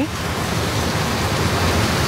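Steady rushing noise with a low hum underneath, even in level throughout.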